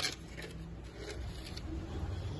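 Quiet handling at a pony's hoof: one sharp click at the start, then a few faint ticks and light scrapes as gloved hands and a small tool work at the hoof, over a low steady background rumble.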